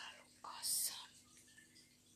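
A short, soft whisper from a woman, in breathy bursts in the first second, then faint room tone.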